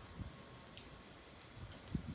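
Light rain falling, a faint even patter with scattered small drips, and a soft knock near the end.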